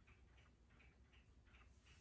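Near silence: room tone with a faint, regular ticking, about three to four ticks a second.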